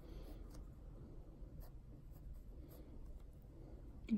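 Pencil sketching on a sketchbook page: faint, irregular scratchy strokes of graphite on paper.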